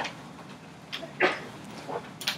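Scattered brief squeaks and knocks in a classroom during quiet work, four short sounds with no talking, the loudest a little past the middle.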